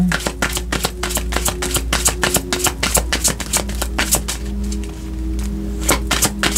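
A tarot deck being shuffled by hand: a fast run of card clicks and slaps that thins out about four seconds in, with soft background music holding long notes underneath.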